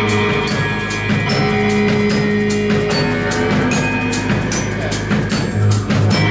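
Live band playing: a drum kit with frequent cymbal and drum strikes under long held notes and chords from keyboards, guitars, bass and horns.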